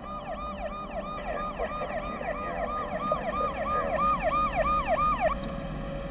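Police car siren in fast yelp mode, rising and falling about three times a second. It cuts off about five seconds in, leaving low road and engine noise.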